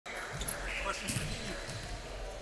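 Basketballs bouncing on a gym floor, a few short thuds, with indistinct voices in the background.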